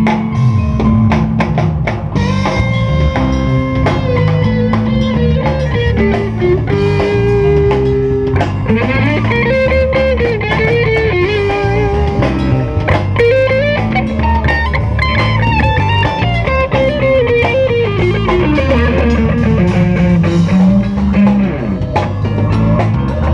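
Live band playing: an electric guitar carries a bending lead melody over drum kit, bass guitar and keyboard.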